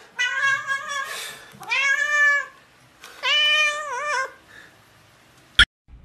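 A domestic cat meowing loudly in three long, drawn-out calls while its head is being handled. A sharp click comes near the end.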